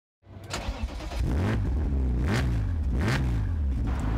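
A car engine running and revving, its pitch rising and falling a few times.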